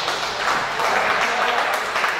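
Audience applauding loudly and continuously after a knockout in a boxing ring.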